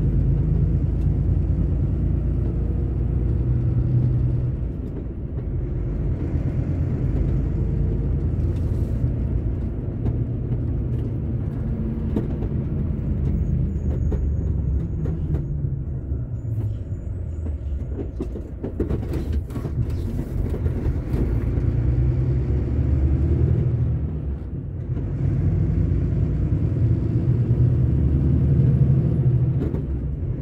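Truck engine running steadily under way with road noise, a continuous low drone that eases off briefly about five seconds in and again near 25 seconds.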